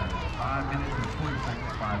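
Several voices talking and calling over one another, none clearly picked out, over a steady low rumble.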